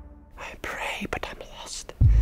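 A trailing music chord fades away, then a voice whispers in short, breathy fragments.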